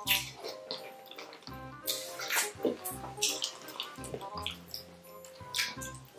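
Wet smacking, chewing and sucking mouth sounds of two people eating sauce-covered chicken feet, coming in irregular sharp bursts over quiet background music.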